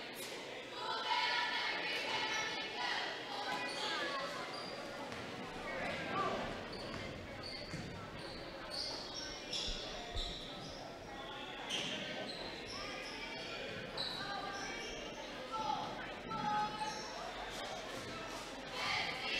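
Basketball being dribbled on a hardwood gym floor, with short high squeaks from players' shoes and voices calling out, all echoing in a large gymnasium.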